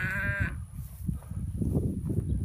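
A farm animal's single wavering bleating call that stops about half a second in, followed by a low rumbling noise.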